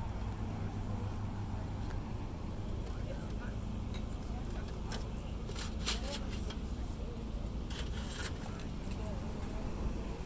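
Old stamped-metal license plates clacking against each other as a hand flips through a crate of them: a few sharp clicks about halfway through and a louder single clack near the end. Faint voices and a low, steady rumble underneath.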